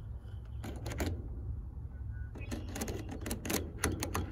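A metal screwdriver blade clicking and scraping against a heat pump start capacitor's terminals as they are shorted together. There are two clicks about a second in, then a quick run of clicks in the last second and a half. No spark or pop is heard, the sign that the capacitor holds no stored charge.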